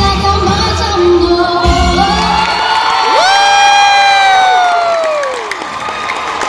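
A young girl's song over a pop backing track comes to its end, the music stopping about two and a half seconds in. A long high vocal 'woo' then slides up, holds and falls away, amid crowd cheering.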